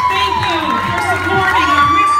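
Crowd cheering and shouting: many high voices overlapping, with long held shrieks.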